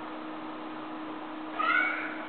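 A cat gives one short meow near the end, during rough play-wrestling, over a faint steady hum.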